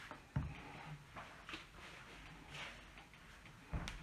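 Faint handling sounds of a plastic rolling pin and hands on a sheet of fondant on a wooden table, with a soft knock about half a second in and a louder knock near the end.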